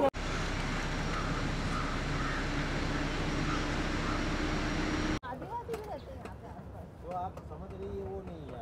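Safari jeep's engine and road noise running steadily, cutting off abruptly about five seconds in. A quieter stretch with short, faint calls follows.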